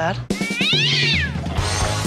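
A cat meowing once: a single call about a second long, rising then falling in pitch, over background music.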